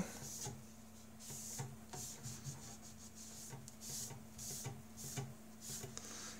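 Damp paper towel rubbing over the PEI sheet of a heated 3D-printer bed in faint, irregular wiping strokes, lifting off glue-stick residue. A faint steady hum runs underneath.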